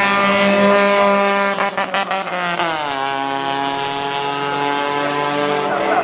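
Race car engine running at steady high revs. Its pitch falls steeply about halfway through, then holds steady at the lower note.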